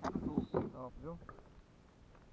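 A man's voice talking briefly for about the first second, then a faint low background hum.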